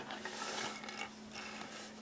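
Small plastic toy accessories being handled and shifted about on a wooden floor: soft rustling with a few faint clicks.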